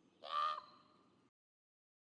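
A single short, harsh, caw-like animal call about half a second long, dropping in pitch at its end.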